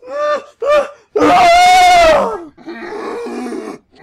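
A person's mock cries of pain: two short cries, then a long, loud, high scream held for over a second that falls away at its end, followed by a lower, strained groan.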